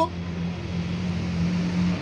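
A motor running steadily: a low, even hum with a hiss above it, growing slightly louder toward the end.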